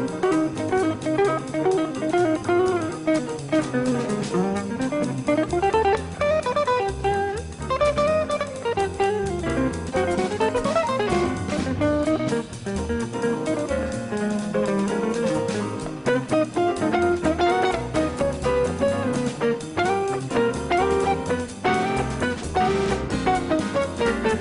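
Jazz guitar solo on a hollow-body archtop electric guitar: fast, winding single-note lines over a swinging drum kit and double bass.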